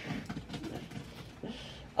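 Faint rustling and scraping of a cardboard shipping box being handled while packing tape is picked at, with a short hiss about one and a half seconds in.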